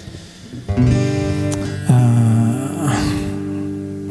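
Acoustic guitar chords strummed, the first about a second in and a second one about two seconds in, each left to ring.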